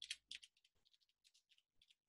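Faint, quick clicks of typing on a computer keyboard, a few sharper ones at the start and then scattered light taps, over near silence.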